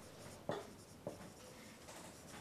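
Marker pen writing on a whiteboard: faint scratching of the felt tip across the board, with a couple of sharper taps about half a second and a second in.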